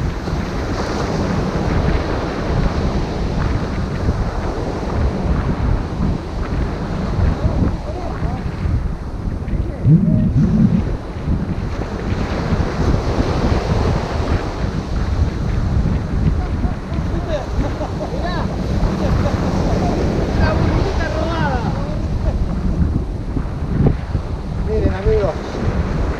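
Strong wind buffeting the microphone over waves breaking on a sandy beach, a steady loud rush with one stronger gust about ten seconds in.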